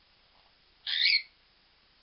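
Parrot giving one short, loud call about a second in.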